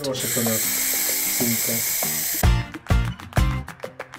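Aerosol spray-paint can hissing steadily as it sprays onto the surface of a tub of water, for about two and a half seconds before it stops. Strummed guitar music follows.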